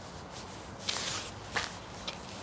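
A few brief scuffing footsteps on brick paving, about a second in and again about a second and a half in, with camera handling noise over a steady outdoor hiss.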